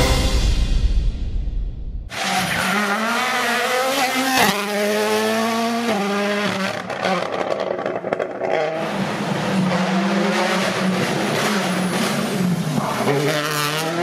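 The music fades out over the first two seconds. Then the Toyota Yaris GR Rally1 rally car's 1.6-litre turbocharged four-cylinder engine is driven hard: its pitch climbs through quick upshifts, drops away, and climbs again near the end.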